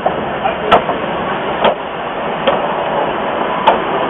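Prussian P8 steam locomotive rolling slowly past as it is brought to a stop, with a steady noise and four sharp knocks at uneven intervals.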